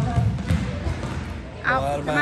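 A basketball bouncing on a hardwood gym floor, a few low thuds early on, then a high-pitched shout near the end.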